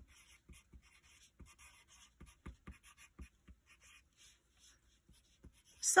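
Pencil writing on paper: a string of short, irregular scratching strokes as a word is printed in capital letters.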